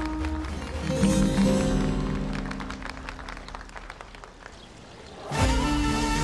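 Dramatic background score with sustained low chords that fade away over the first five seconds, then a new loud swell of strings about five seconds in.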